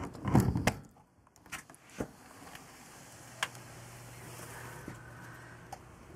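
Sliding door of a wooden reptile enclosure scraping open in a short, loud rumble, followed by a few faint clicks and a faint low hum.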